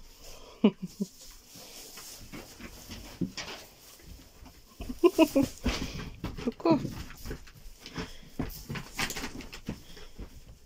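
Fox cubs giving short, pitched calls: a brief one early, then a cluster of several about halfway through.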